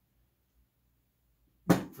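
Near silence, then a single sharp knock about a second and a half in, as a man begins to speak.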